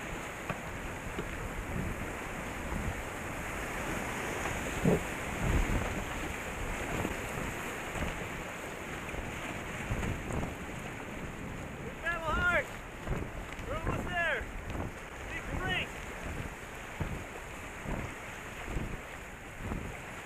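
Water rushing and slapping against a canoe's hull as it is paddled through choppy river water, with wind buffeting the microphone and repeated low thumps about once a second.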